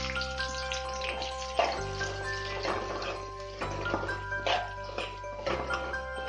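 Background music with steady chiming notes and a bass that shifts every couple of seconds, over the hiss of sliced onions sizzling in hot oil in an aluminium kadai, with a few short scrapes of a steel spoon stirring them.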